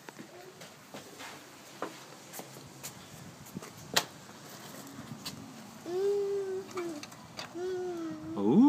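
Scattered footsteps and small handling knocks, with one sharp click about halfway through. Near the end a wordless voice sound comes twice, a held tone that falls away.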